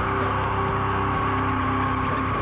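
Live heavy rock band playing, with an electric guitar holding sustained notes over bass and drums.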